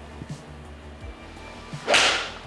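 Golf iron striking a ball off a practice mat near the end: one sharp strike that rings briefly.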